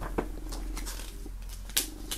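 A folded paper poster being unfolded by hand: a few short, crisp paper crackles, the loudest near the end, over a faint steady low hum.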